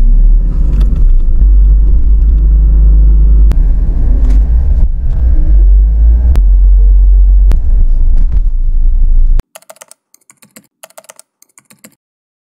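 Car cabin noise while driving: a loud, deep rumble of engine and road, with a few sharp clicks. It cuts off suddenly about nine seconds in, leaving faint, quick ticking.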